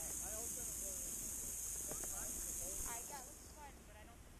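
Faint, distant voices talking over a steady high hiss, which drops away about three seconds in.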